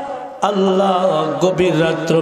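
A man's voice chanting a supplication in long held, melodic notes, breaking off briefly about half a second in before carrying on.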